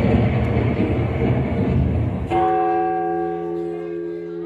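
Performance soundtrack: a dense rumbling noise for about two seconds, then a sustained bell-like chord of several steady tones starts suddenly and slowly fades.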